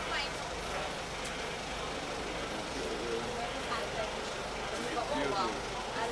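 Indistinct voices of several people talking at a distance over a steady outdoor hum of traffic and engines.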